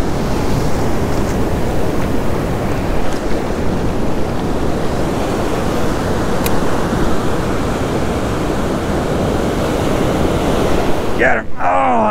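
Steady rush of ocean surf breaking on the beach, with wind on the microphone.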